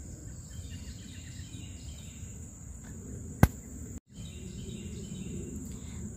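Outdoor garden ambience: a steady high-pitched insect drone over low background noise. A single sharp click comes about three and a half seconds in, and all sound cuts out for a split second just after.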